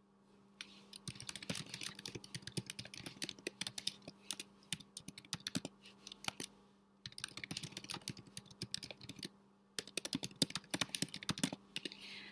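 Typing on a computer keyboard: three quick runs of keystrokes, broken by short pauses about halfway through and again near the end, over a faint steady hum.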